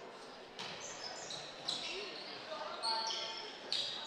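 Volleyball rally in a gym: a sharp hit of the ball about half a second in and another near the end, with many short sneaker squeaks on the court floor between, echoing in the hall.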